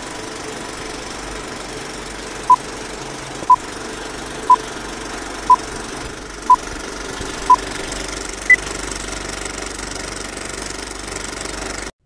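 Old-film countdown leader sound effect: a steady film-projector rattle and hiss with a short beep every second, six in all, then one higher-pitched beep. It cuts off suddenly.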